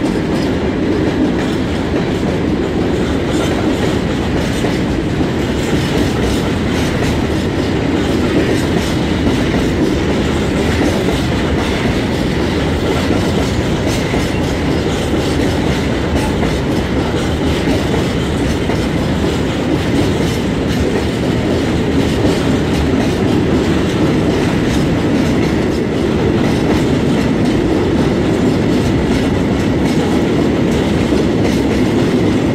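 Tank wagons of a long freight train rolling past close by: a steady loud rumble with the wheels clicking over the rail joints.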